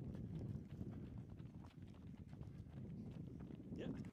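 Footfalls of a small group of people jogging together on a dirt road, many short soft thuds over a steady low rumble. The sound cuts off suddenly at the end.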